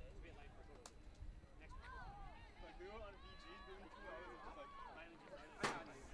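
Faint, distant voices of players calling out on an open field, in short rising-and-falling shouts. A single sharp knock sounds near the end.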